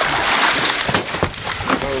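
A large cobia thrashes on a gaff at the surface beside the boat, splashing hard. The splashing eases after about a second, and a few sharp knocks follow.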